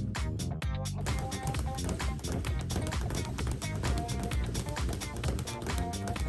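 A leather speed bag being punched in a rapid, even rhythm, drumming against its wooden rebound board, under background music.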